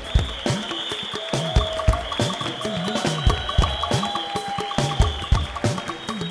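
Live band playing an instrumental Fuji groove: talking drums sounding swooping, pitch-bending strokes over a drum kit's steady beat, with a held keyboard note.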